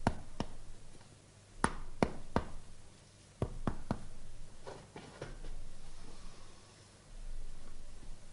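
A doctor's fingers knocking on a man's chest and shoulder, as in a percussion examination: short sharp taps, some single and some in quick twos and threes.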